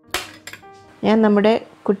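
A steel spoon set down beside glass serving bowls, clinking sharply twice in quick succession, followed by a woman's voice.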